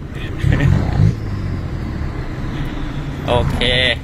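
A 1.9-litre turbodiesel pickup engine with an aftermarket turbo, running under load on the road, heard from inside the cabin with road noise. A louder surge of engine sound comes about half a second in, then it runs on steadily.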